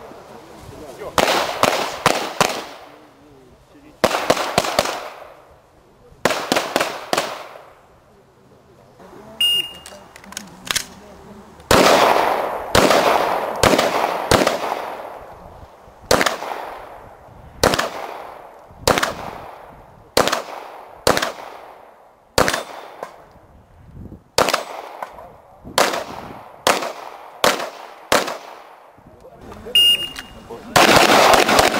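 Glock pistol shots fired in quick strings of two to four, each shot ringing out with a trailing echo, through the whole stretch. A shot timer gives a short high start beep about nine seconds in, and another near the end.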